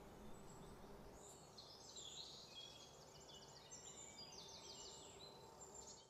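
Faint birdsong in the open air: high, short chirps and quick trills from small birds, starting about a second in, over a quiet background hush.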